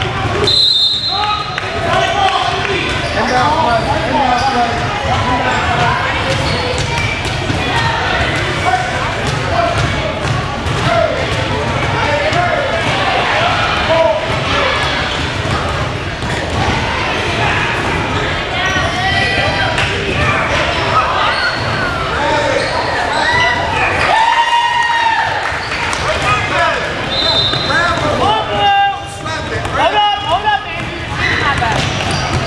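Basketball being dribbled and bouncing on a gym's hardwood floor, against a steady din of overlapping spectator and player voices in the hall. A short, high whistle blast sounds about a second in, typical of a referee stopping play on a scramble for a loose ball.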